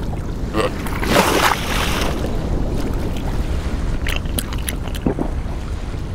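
Steady wind and sea ambience over the ice, with a few short cartoon sound effects on top: a brief wavering sound about a second in and a few light clicks around four seconds.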